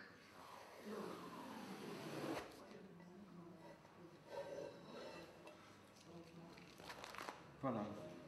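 Masking film being peeled off a sheet of glass: a rasping rip that stops abruptly about two and a half seconds in, then light handling noises as the glass is picked up, and a man's voice near the end.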